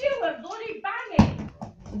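A plastic bottle flipped and landing with one sharp thud on a wooden floor about a second in.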